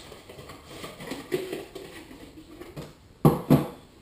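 Quiet handling of plastic spray-gun parts, then two sharp knocks near the end as a plastic hopper cup is set down on a cardboard box.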